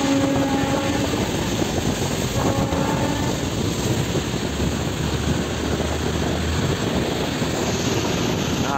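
Wind buffeting the microphone over a steady rumble of highway traffic, with two brief horn tones near the start and about two and a half seconds in.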